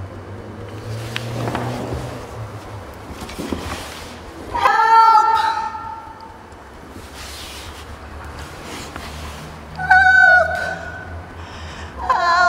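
A woman's voice crying out twice in long, high cries, about four and a half seconds in and again about ten seconds in, the second one dropping in pitch at the end. Between the cries there is only a low hum and faint rustling.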